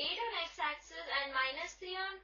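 A woman's voice talking throughout.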